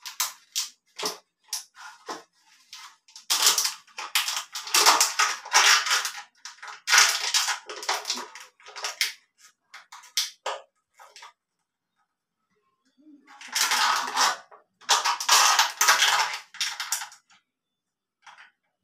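Water splashing and sloshing as a hand scoops it from a ceramic squat toilet pan with a glass. It comes in irregular bursts, with a pause of about two seconds after the middle.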